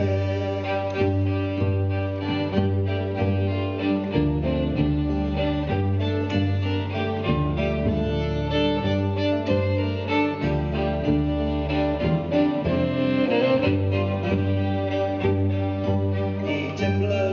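Folk trio playing an instrumental passage: fiddle carrying the tune over acoustic guitar and a plucked double bass line.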